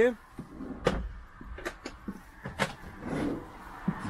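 Wooden kitchen drawers in a camper van being closed and pulled open on their runners, with a handful of sharp clicks and knocks and a short sliding rush about three seconds in.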